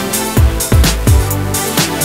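Background music: an electronic track with a steady kick-drum beat and bass.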